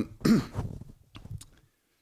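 A man's short laugh into a close microphone: one brief chuckle right at the start, then a couple of faint clicks.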